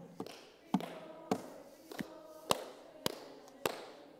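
A person clapping hands in a steady beat: about seven sharp single claps, a little under two a second.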